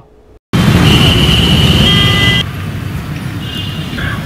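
Loud outdoor background noise that cuts in after a brief silence, with a steady high tone over it for about two seconds; at about two and a half seconds the tone stops and the noise drops to a lower, steady level.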